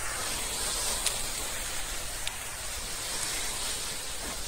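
Crop sprayer's nozzle hissing steadily as it puts out a fine mist of spray onto grapevines.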